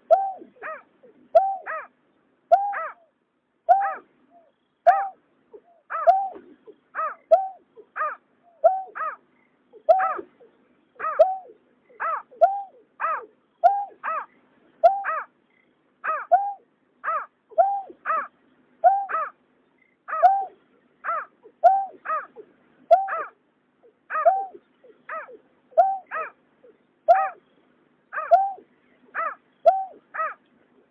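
Greater painted-snipe calling: a long series of short, hollow, hooting notes, about three every two seconds, each note bending up and then down.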